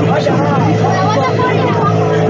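A boat's motor running steadily, with people's voices talking over it.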